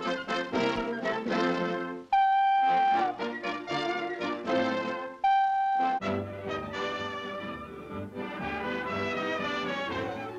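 Brass-led orchestral title music of a 1930s cartoon: a busy fanfare with two long held notes, about three seconds apart, that are the loudest moments.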